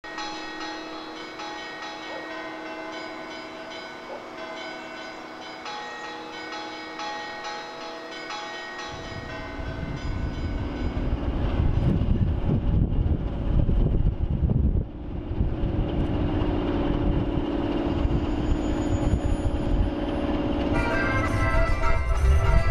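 Steady bell-like ringing tones for about the first nine seconds. Then the low rumble of a railway locomotive at work in a station yard comes in and grows louder, with a steady drone in the last few seconds.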